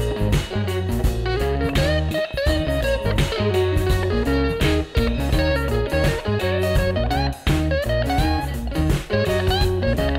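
Instrumental background music led by a plucked guitar melody with sliding notes, over a steady bass line.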